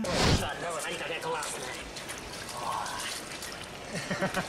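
Water splashing and trickling, beginning with one loud splash, with faint voices underneath.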